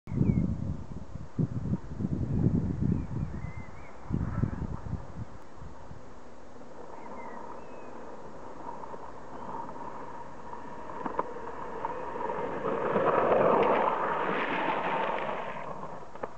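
Longboard's urethane wheels rolling on rough asphalt, a steady noise growing louder as the board approaches, then a louder scraping slide lasting about three seconds near the end as the rider drifts the board. Low rumbling thumps on the microphone in the first few seconds.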